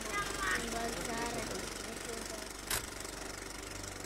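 Old camcorder home-video soundtrack: faint voices in the first second or so over a steady, buzzy tape hum, with one sharp click near the end as the footage breaks up.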